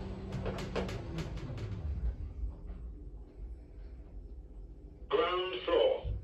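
Orona traction lift arriving at the ground floor: the drive's steady hum dies away in the first second as the car stops, with a run of clicks from the lift mechanism over the first two seconds. Near the end a recorded voice announcement starts.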